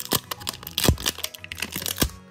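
Crinkling and crackling of plastic packaging as the wrapper is peeled off a hard plastic toy capsule ball, with one louder crack near the middle.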